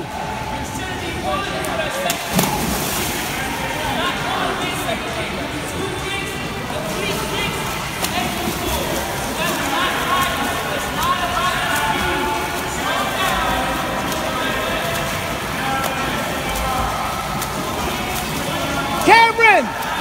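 Indoor swimming pool hall: a steady hubbub of children's voices from around the pool, with splashing from a swimmer doing freestyle.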